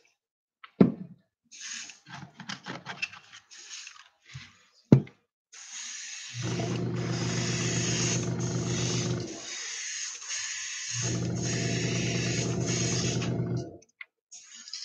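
Airbrush spraying a pearlized silver base coat onto a lure: a few short puffs of air, then a long steady hiss of spray. Under the hiss an air compressor's motor hums, cutting out about nine seconds in and starting again about two seconds later. Two sharp knocks come near the start.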